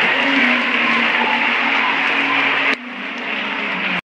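Audience applauding in a large crowd. The applause drops off suddenly with a click about three quarters of the way through, leaving quieter crowd noise.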